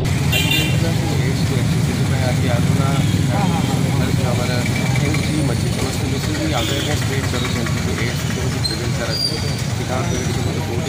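Steady street traffic rumble, with people's voices running faintly over it.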